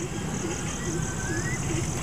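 A pause in speech filled by low, steady outdoor background noise, with a faint short rising whistle just past the middle.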